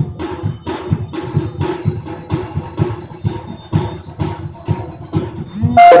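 Live drums accompanying a silat bout, beaten in a fast, steady rhythm of about four strokes a second, with a held tone sounding over them. Near the end a person exclaims and laughs loudly.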